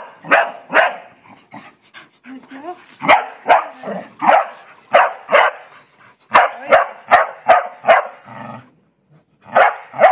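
Bull terrier play-barking: short, sharp barks in quick runs of two to five, about two a second, with a brief pause near the end.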